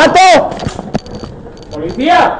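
A man shouts loudly once at the very start, followed by quieter scattered knocks, clicks and rustling, with shouting voices rising again near the end.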